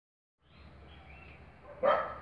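A dog barking once, a single short bark near the end, over faint steady background noise.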